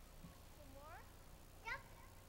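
Two short high-pitched vocal calls: a rising one about a second in, then a louder, sharper one near the end.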